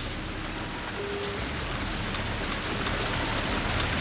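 Acid solution poured from a glass jar into a plastic lid: a steady, even trickle and splash of liquid.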